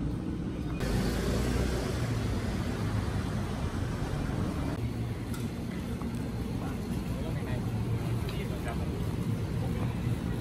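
City street ambience: a steady low rumble of traffic with passers-by talking.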